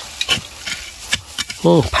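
Wooden-handled digging tool jabbing and scraping into dry, crumbly soil: a few short sharp knocks and gritty scrapes of loosened dirt.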